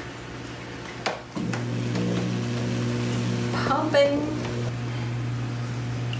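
A click as the plug goes in, then a small submersible aquarium pump starts about a second and a half in and hums steadily, driving nutrient water up into the living wall's drip irrigation tubing.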